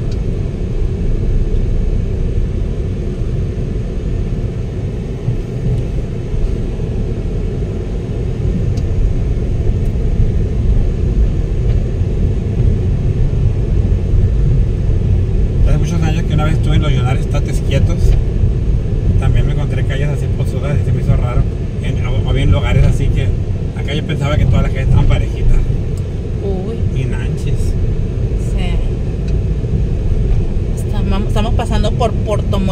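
Steady low rumble of a car's engine and tyres, heard from inside the cabin while driving along a concrete street. From about halfway, low voices talk over it.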